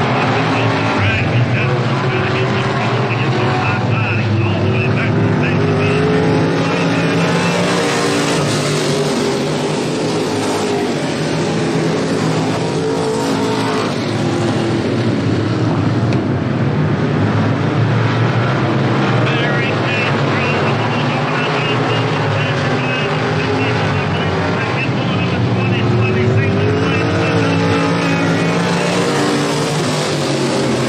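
Several dirt-track race car engines running laps around the oval, their pitch rising and falling as the cars go around and pass, over a steady bed of engine noise.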